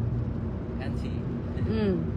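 Steady low hum of a car's road and engine noise from inside the cabin while driving on a highway. A short falling voice sound comes near the end.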